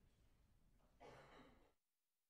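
Near silence: faint room tone with one brief soft breath-like noise about a second in, after which the sound cuts out to dead silence.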